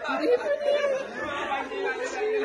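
A group of people chattering, several voices talking over one another.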